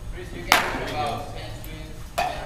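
Youth baseball bat striking a ball once, about half a second in: a sharp crack with a short ring after it.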